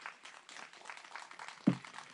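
Scattered light applause from a small audience, with a dull low thump close to the microphone near the end.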